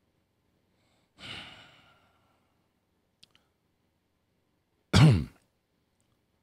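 A man sighs heavily into a close studio microphone about a second in. Near the end comes a short, loud throat sound like a cough.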